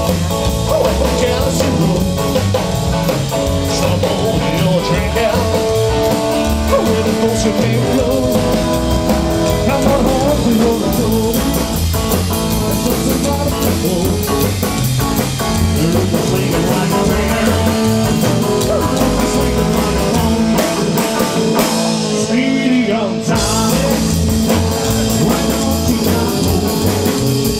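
Live rock and roll band playing: a singer over upright double bass, drum kit and electric guitar, with a steady driving beat.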